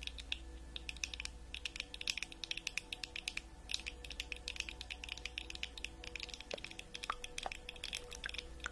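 Long acrylic fingernails clicking and tapping in quick, irregular runs, with a few short pauses between runs.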